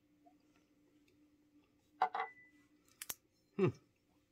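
Mouth sounds of a man tasting neat tequila: a short sip about two seconds in, then two quick lip smacks a second later, followed by an appreciative 'hmm'.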